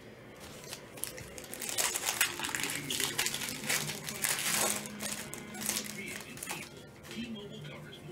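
Foil wrapper of a 2021 Panini Prizm Football hobby pack being torn open and crinkled by gloved hands, a dense crackling that is loudest in the middle few seconds and eases toward the end.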